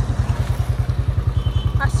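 Motorcycle engine running at a steady idle, a fast, even beat of low pulses; a short spoken word near the end.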